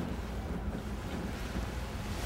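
A steady, low background rumble with no distinct events.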